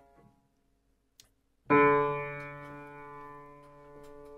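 Upright piano: a held note is damped off at the start, then after a short quiet with one faint click a single key is struck and rings on, slowly fading. The new note is a D a quarter tone flat, the piano being out of tune before tuning.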